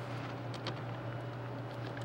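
Steady low electrical hum over room noise, with a couple of faint clicks about half a second in.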